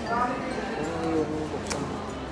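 A person's voice drawing out long vowel sounds, with a short sharp click near the end.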